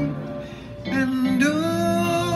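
A man singing a slow soul ballad live into a microphone over instrumental accompaniment. The sound dips briefly about half a second in, then he comes back in on a long held note.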